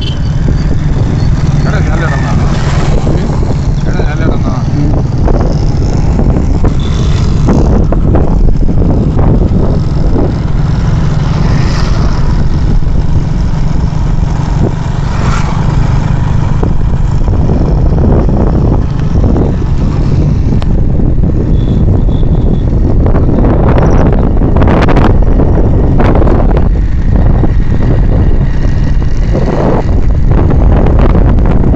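Motorcycle engine running under way, largely covered by a loud, steady rumble of wind buffeting the microphone while riding.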